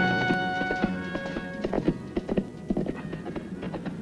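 Horse hooves clip-clopping in a steady rhythm as a horse is ridden away, with a held music chord fading out over the first two seconds.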